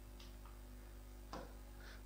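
Quiet room tone: a steady low hum, with a few faint short sounds such as a breath or mouth click.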